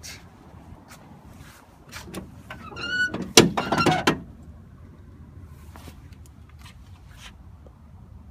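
A car's trunk lid being opened: a few light clicks, a short rising squeak, then a loud clunk a little past three seconds in as the lid comes up, followed by faint clicks.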